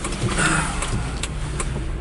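Small Jiayuan electric microcar heard from inside its cabin while moving slowly: a steady low hum from the running car.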